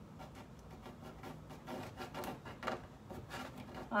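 Faint, irregular scraping and rubbing strokes from hand work on a painted craft board, with a few short knocks in the middle.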